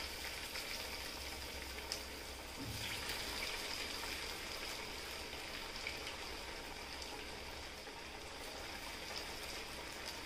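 Chana dal vadas deep-frying in very hot oil in a kadai: a steady sizzle with scattered light crackles. This is the second fry of vadas already fried once, to crisp them.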